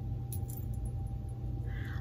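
Steady low electrical hum with a faint high steady tone, and a few faint light ticks about half a second in.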